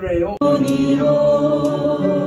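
A small congregation singing a hymn in Japanese, voices together on long held notes. The sound breaks off sharply a moment in and resumes on a new sustained chord.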